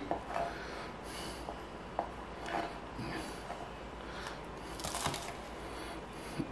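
Kitchen knife slicing bird-eye chilies on a cutting board: quiet, irregular light knocks with some scraping.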